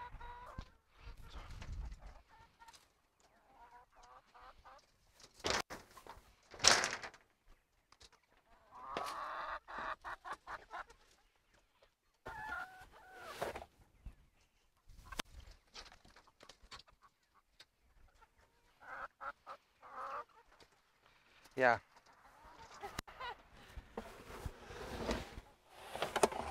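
Laying hens clucking in short, scattered calls while they crowd a trough feeder, with runs of small clicks between them. Two loud sharp knocks come about six seconds in.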